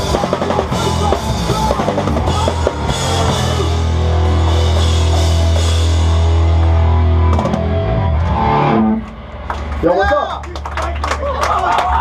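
Live hardcore punk band playing fast: pounding drum kit with crashing cymbals, distorted guitar and bass. The song ends on a long held chord that stops about eight to nine seconds in, followed by people shouting.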